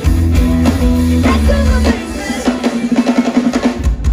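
Live pop band playing with the drum kit to the fore: a heavy bass beat for about two seconds, then a drum build of quickening hits that leads into the next section.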